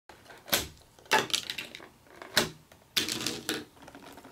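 Irregular light knocks and short clatters of toy swords being handled and pushed into the slots of a paper-craft pumpkin pop-up game, with quiet gaps between them.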